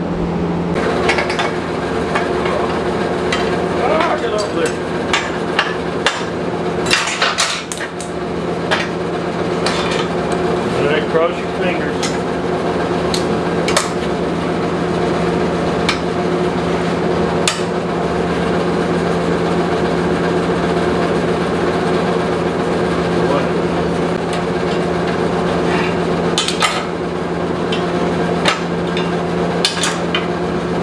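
Metal clanking on a steel welding table as hot steel plates are set down and a heavy angle iron is laid over them and clamped with locking C-clamps: scattered sharp knocks and clanks, busiest about a quarter of the way in and again near the end. Under it runs a loud steady machine hum.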